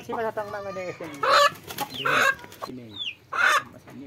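A chicken being held in the hands, squawking and clucking in a series of separate calls about a second apart.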